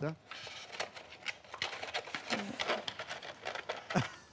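Quiet room with soft, irregular small clicks and rustles of handling, and a brief murmured hum about two seconds in.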